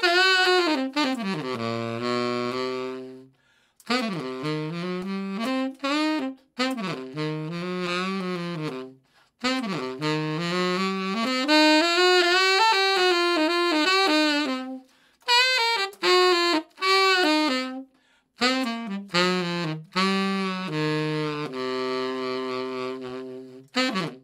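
Selmer Bundy tenor saxophone played solo: a run of short melodic phrases with bends and scoops in pitch, separated by brief pauses, the last phrase settling on held low notes.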